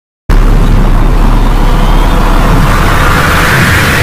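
Cinematic intro sound effect: a loud rushing rumble that starts abruptly a moment in and swells brighter toward the end, like a riser building to a reveal.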